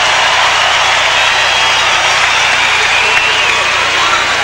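Arena crowd noise: a steady, loud wash of many voices, unchanging over the four seconds, as heard through a television broadcast.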